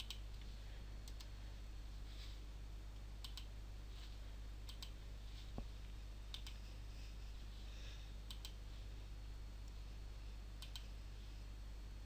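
Computer mouse and keyboard clicks, mostly in quick pairs a second or two apart, over a faint steady low electrical hum.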